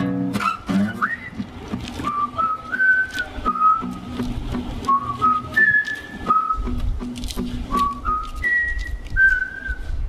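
Two people whistling a simple melody together, held notes stepping up and down, over a strummed acoustic guitar.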